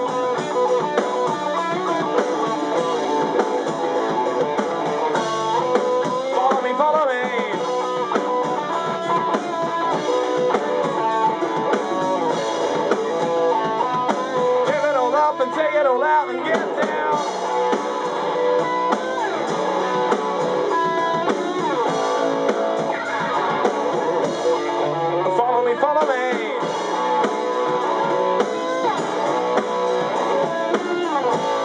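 A rock band playing live in rehearsal: electric guitars over a drum kit, loud and continuous, in an instrumental stretch of the song with bending guitar notes at times.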